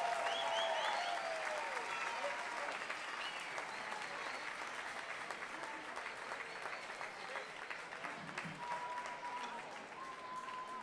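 Crowd applauding, with a few cheers near the start; the clapping slowly dies away.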